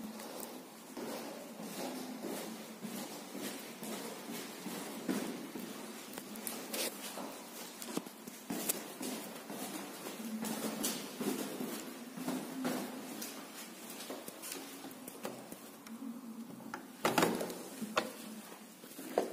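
Footsteps going down a stairwell, with irregular knocks and rustling from a handheld phone, and one louder knock near the end.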